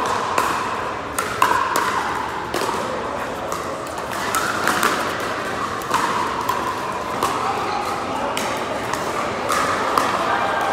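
Pickleball paddles striking the hollow plastic ball during a doubles rally: sharp pops at uneven intervals. Further pops and players' voices from neighbouring courts echo in a large indoor hall.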